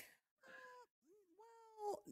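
A house cat meowing faintly, two short calls about a second apart; the second one rises in pitch at its start.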